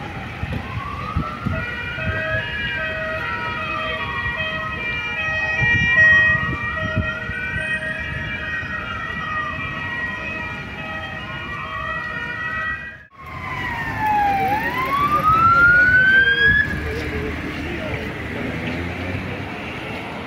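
Electronic wail siren of a Volkswagen Crafter water-rescue van on an emergency run, rising and falling slowly about every six seconds, with a chord of steady tones held alongside it. After a brief cut about two-thirds through, the wail comes back louder for one more sweep, then gives way to traffic noise.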